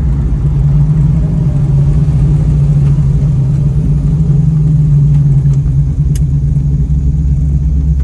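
1970 Dodge Challenger R/T's V8 running steadily, heard from inside the cabin as the car slows for a stop sign.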